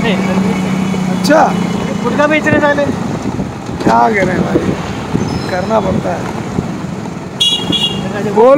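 Motorcycle riding through city traffic: a steady engine and road rumble, with a vehicle horn honking briefly near the end.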